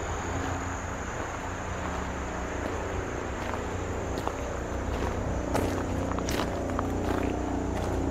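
Steady outdoor insect chorus, crickets keeping up a constant high thin drone over a low steady background rumble, with a few scattered footstep clicks after the middle.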